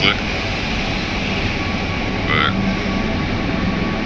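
A steady, even background noise with a faint hum, with a brief snatch of voice about two and a half seconds in.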